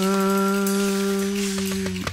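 A singer holding one long, steady note at the close of a sung phrase, with a few soft taps near the end.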